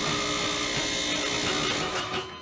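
Film soundtrack: a loud, steady electric buzzing drone, the sound effect of an electroconvulsive-therapy shock being delivered. It cuts off suddenly at the end.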